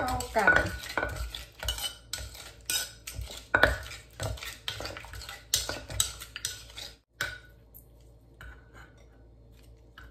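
Wooden pestle and metal spoon knocking and scraping in a clay mortar as a wet som tam dressing with tomatoes is tossed together. The knocks are irregular and come thickly for about seven seconds, then thin out to a few faint clicks.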